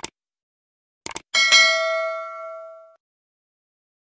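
Subscribe-button animation sound effect: a mouse click at the start, a quick double click about a second in, then a bright notification-bell ding that rings out and fades over about a second and a half.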